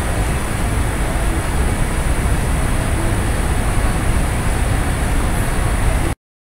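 Steady background noise with a low rumble and a thin, high, constant whine, unbroken throughout.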